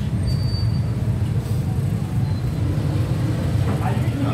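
Steady low rumble of busy street background noise, with a voice starting near the end.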